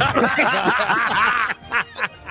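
People laughing, breaking into snickers and chuckles that die down about a second and a half in.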